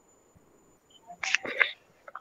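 Faint line hiss, then about a second in a short cluster of clicks and rustle picked up by a video-call participant's microphone as it opens, just before she speaks.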